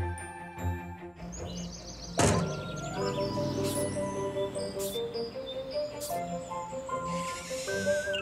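Cartoon background music with a sudden thunk about two seconds in, followed by a few lighter hits and a hissy swell near the end.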